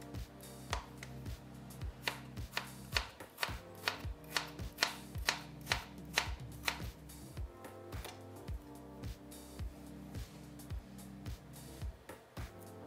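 Chef's knife slicing a red onion on a cutting board: a steady run of sharp cuts, about two to three a second, that grow fainter in the second half.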